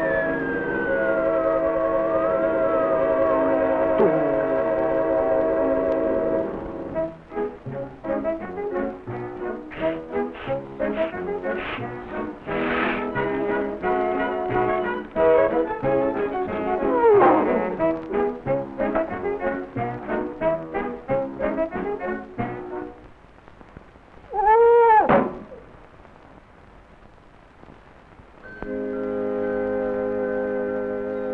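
Cartoon score music, with a falling pitch glide over a held chord at the start, then busy staccato passages with a downward swoop partway through. Near the end comes a short, loud arching glide, a brief lull, and then a soft sustained chord.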